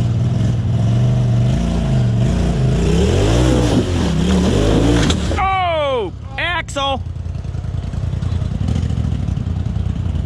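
Polaris RZR side-by-side engine revving up and down unevenly as the machine crawls over rocks, then dropping back to a lower rumble about halfway through. A person's voice calls out in a long falling shout, followed by two shorter ones.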